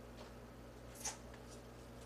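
Faint kitchen handling sounds over a steady low hum: a single light click of a utensil against a dish about a second in, with a few softer ticks around it.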